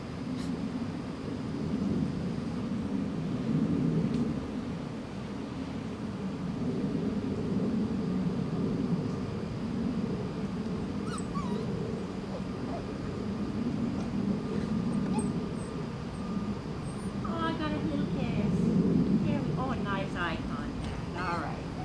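Seven-week-old standard poodle puppy whimpering and whining while held on her back in a restraint test, in protest at the hold: a short falling whine about halfway through, then a run of high, wavering whimpers near the end. Under it is a steady low rumble.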